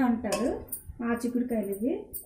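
A voice talking over the clink and scrape of a spoon against a granite-coated cooking pot as chopped long yard beans are stirred, with a few sharp clicks from the spoon.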